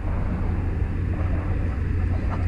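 Steady low rumble of outdoor background noise with an even hiss above it, no distinct events.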